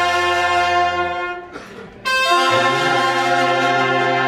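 Brass band playing long held chords. One chord ends about a second and a half in, and after a short gap another begins, with a low bass note joining shortly after.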